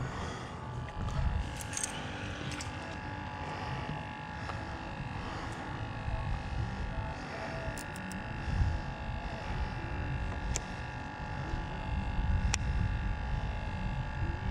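Wind rumbling on the microphone over a faint steady hum, with a few sharp light clicks near the end.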